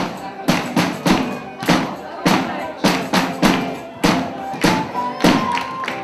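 Live band music with drums keeping a steady, loud beat, a strong hit roughly every half second with lighter hits between, and voices over it.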